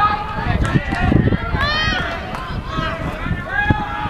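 Several voices shouting and calling out at once on a soccer field, one loud rising-and-falling shout about two seconds in, with a few low thumps on the microphone.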